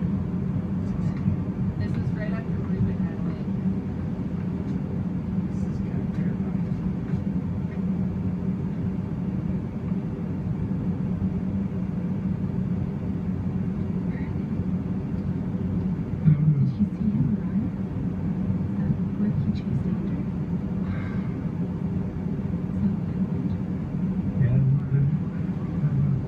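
A steady low rumble with a constant hum, with faint, unintelligible voices now and then, a little louder about two-thirds of the way through and near the end.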